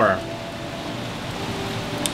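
A pause in a man's speech filled by a steady, even background hiss, with the end of his voice trailing off right at the start.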